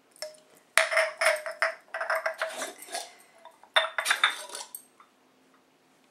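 Small metal candle tins and their lids being handled, clinking and scraping, with two sharper clanks, one about a second in and one near four seconds. A short metallic ring follows the first clank.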